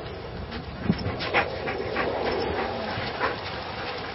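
A dog making a few short sounds, around a second in and again near three seconds, over steady outdoor background noise.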